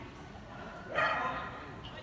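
A dog barks once, about a second in.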